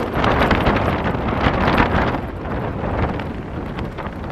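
A gust of wind buffeting a Hilleberg Soulo tent, heard from inside, the fabric rustling and shaking. It is strongest over the first couple of seconds and dies away toward the end.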